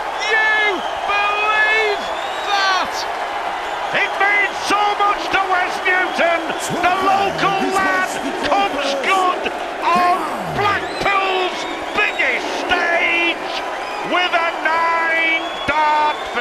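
Large arena crowd cheering, whooping and shouting over one another, loud and sustained, in celebration of a nine-dart finish.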